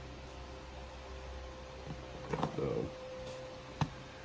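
Faint handling sounds of a gloved hand working raw pork tenderloin on a plastic cutting board, pulling away the silver skin. There are a few soft clicks, a brief rustle about two and a half seconds in and a sharp tick near the end, over a steady low room hum.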